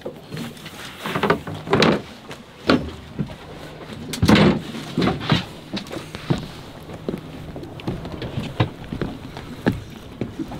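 Irregular knocks and thuds around a small boat's cabin and deck as people move about, about a dozen of them, the loudest about four seconds in.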